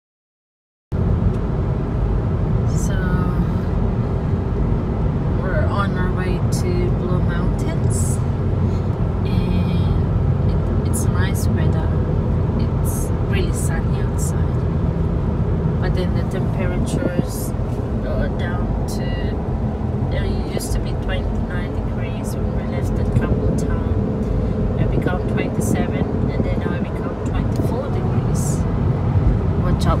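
Steady road and engine noise inside a moving car's cabin at highway speed, starting about a second in, with voices now and then over it.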